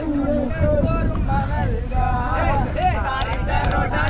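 Wind buffeting the microphone in a steady low rumble, under the voices of several people talking.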